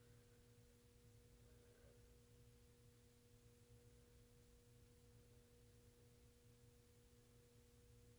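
Near silence: room tone with a faint, steady, even-pitched hum.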